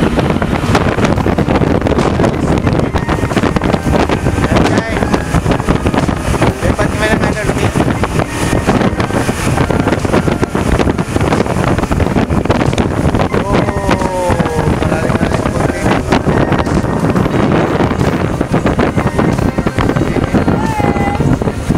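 Motorboat running under way, with heavy wind buffeting the microphone throughout.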